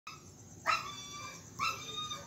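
A dog whining: a long high-pitched whine starting about two-thirds of a second in, then a short one near the end.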